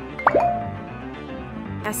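A cartoon 'plop' sound effect, one quick pop that falls sharply in pitch, about a quarter-second in, over light children's background music.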